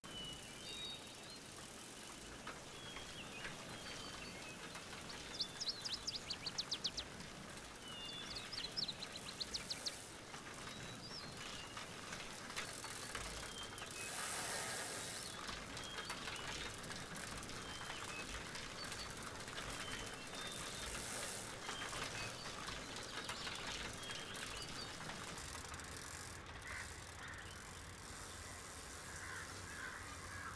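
Faint rural outdoor ambience with small birds chirping on and off throughout. There are two bursts of rapid trilling, one about five seconds in and one near ten seconds.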